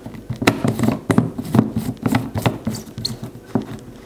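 Plastic clicking and knocking as the blade base is screwed by hand onto a filled Nutribullet cup. The clicks are irregular, about two or three a second.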